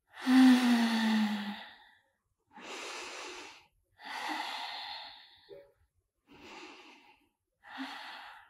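A woman breathing deeply and audibly, about five breaths in eight seconds, while holding yoga boat pose. The first and loudest is a long exhale sighed out on a falling voice; the rest are softer breaths.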